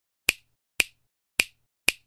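Four sharp finger-snap sound effects, about half a second apart, each dying away at once.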